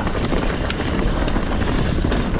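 Wind rushing over an action camera's microphone as a Trek Fuel EX 7 mountain bike rolls fast over dirt singletrack, with a steady rumble from the tyres and scattered short clicks and rattles from the bike.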